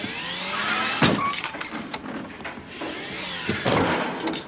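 Small electric utility cart's motor whining and rising in pitch as it moves off, ending in a sharp knock about a second in. The whine rises again, and another knock follows near the end.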